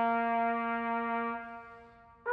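Trumpet holding one long note that fades away over the last half second.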